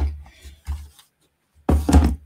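Lid pressed onto a large plastic embossing-powder tub, then the tub is handled on the desk. There are dull plastic knocks and thumps: a loud one at the start, a smaller one under a second in, and another loud one near the end.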